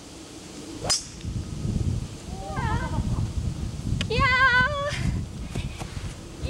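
A golf club striking the ball once, a sharp crack about a second in, as a shot is played from the rough. A low rumble follows, and then drawn-out, wavering vocal cries, the loudest one near the middle.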